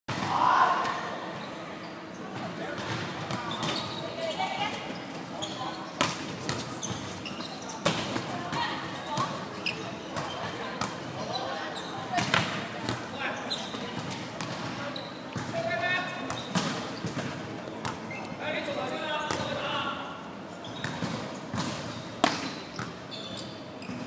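Indoor volleyball rally: irregular sharp smacks of the ball being struck and hitting the floor, amid players' voices calling out, in a large sports hall.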